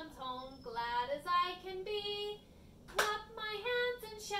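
A woman singing a simple children's song alone and unaccompanied, in held notes that step up and down, with one sharp clap of the hands about three seconds in.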